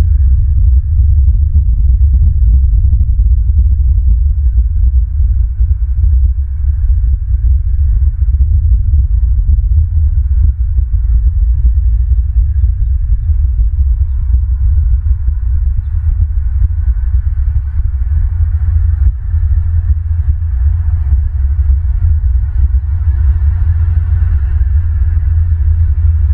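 Loud, continuous low rumble with an uneven, pulsing throb, typical of wind buffeting an outdoor nest-cam microphone.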